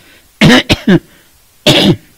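A man coughing close to a microphone: a quick run of three coughs about half a second in, then one more single cough near the end.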